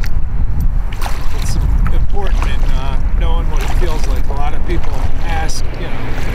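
Double-bladed kayak paddle strokes dipping and splashing in the water, over a steady low rumble of wind on the microphone.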